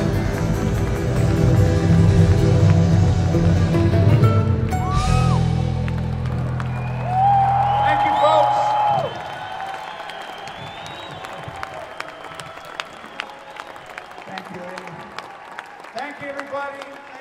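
A live rock band with guitars and drums holds a final chord that rings and then cuts off about nine seconds in. After it, the audience applauds and cheers, with scattered claps.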